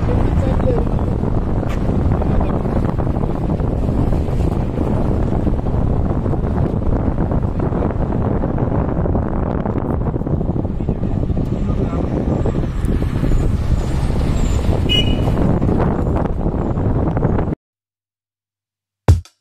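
A vehicle on the move, with steady, loud engine and road noise heaviest at the low end. It cuts off suddenly near the end.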